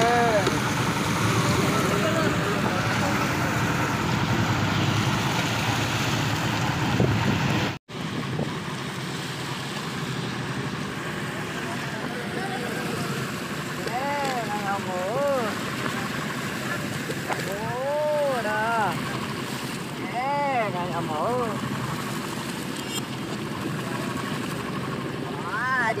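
Crew hauling a fishing net by hand on a boat at sea: a steady noise of the boat and sea water, with several drawn-out, rising-and-falling calls from the crew in the second half. The sound cuts out sharply for an instant about eight seconds in and is quieter afterwards.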